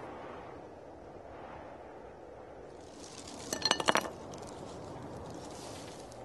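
Hard objects clinking together as a hand rummages through a bag: a short cluster of sharp chinks about three and a half seconds in, within a soft rustle.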